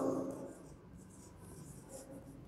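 Marker pen writing on a whiteboard: faint strokes of the tip across the board as a word is written.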